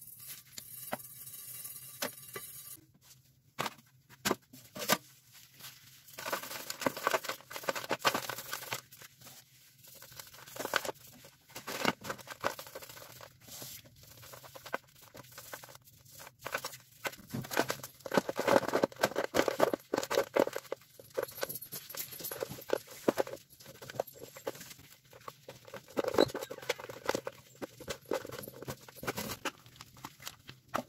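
Rubber-gloved hands crushing and grating crumbly slabs of dried cleaning-powder paste on a metal grater, making dense, irregular crunching and crackling in bursts, with crumbs pattering onto metal.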